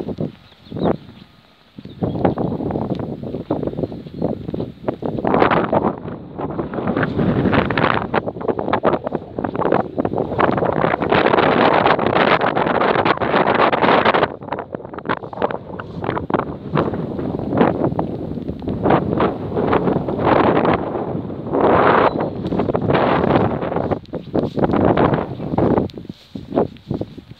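Wind buffeting a phone's microphone, a loud rough rumble that rises and falls in gusts, with a brief lull about a second in.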